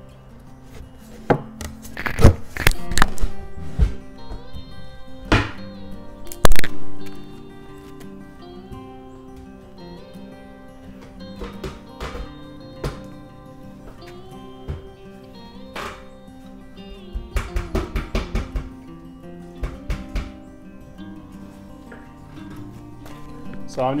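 A wooden shelf panel being knocked and pressed down into a snug-fitting wooden table frame: a series of wooden thunks, the loudest about six and a half seconds in, with a quick run of taps near the end, over background music.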